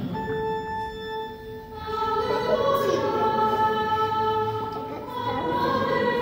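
A choir singing with long held notes, the pitch changing about two seconds in.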